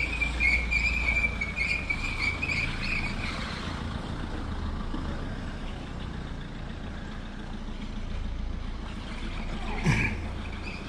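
An insect chirring in a high, pulsing, steady band, fading out about three seconds in and coming back at the very end, over a low steady rumble outdoors. A short falling swoosh sounds just before the end.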